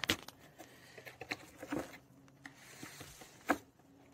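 Small clicks, scrapes and rustles of handling a metal can of oil treatment while working its cap open, with one sharper click about three and a half seconds in.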